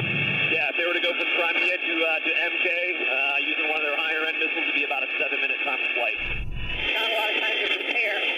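Tinny, narrow-band speech over a Black Hawk helicopter's headset intercom, with the helicopter's steady cabin noise carried behind it. A brief low rumble comes in about six seconds in.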